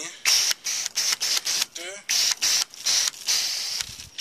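Foam gun spraying car-wash soap foam onto a truck: a hissing spray that cuts in and out in short stretches.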